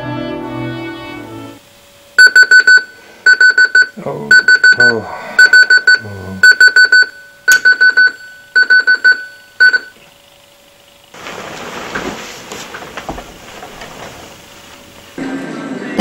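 Sony clock radio's alarm beeping, a high electronic beep in quick bursts of four repeating about once a second, which stops about ten seconds in.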